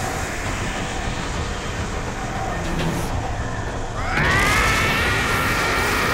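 Anime power-up sound effect: the dense, steady rumble of an energy aura. About four seconds in, a character's long, loud yell comes in over it and holds.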